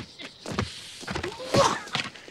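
A man crying out in pain: two short, strained yelps about half a second and a second and a half in, from burning his hand on a red-hot doorknob.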